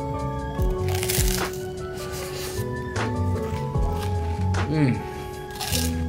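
Background music with a steady beat, over which a crunchy chocolate rice cake topped with ice cream is bitten into and chewed, loudest about a second in.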